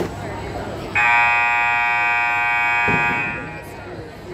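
Gymnasium scoreboard buzzer sounding one long steady blast of about two seconds, starting abruptly about a second in and dying away in the hall.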